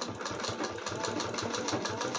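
Usha sewing machine stitching at a slow, steady pace: an even, rapid rhythm of needle strokes from the running machine.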